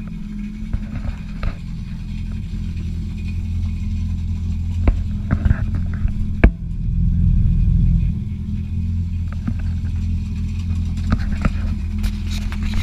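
Yamaha FX Cruiser SVHO jet ski's supercharged four-cylinder engine idling steadily on its trailer, running for a freshwater flush. The idle swells a little for a second or so about six and a half seconds in, and a few sharp clicks or knocks are handled close to the microphone, the loudest just before the swell.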